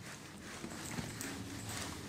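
Faint strokes of a hand-held eraser rubbing across a whiteboard as it is wiped clean.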